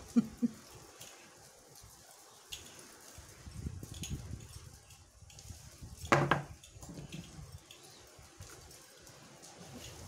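Handling noise of brush work with liquid cement on a cloth flower: two sharp knocks right at the start, then soft dabbing and rustling. A brief voice-like sound comes about six seconds in.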